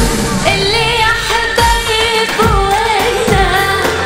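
A woman singing an Arabic song into a microphone, her voice moving in ornamented, wavering runs, over musical accompaniment with a regular percussion beat.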